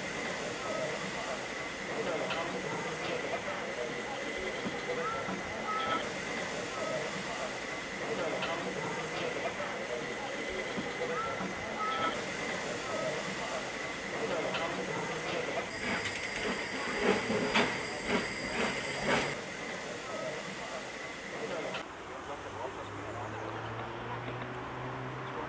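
Narrow-gauge steam locomotive standing in steam with its boiler at working pressure, hissing steadily. About two-thirds of the way through comes a few seconds of sharper metallic clanks with a higher hiss.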